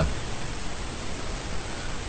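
Steady hiss of background noise with no other sound: the recording's own noise floor.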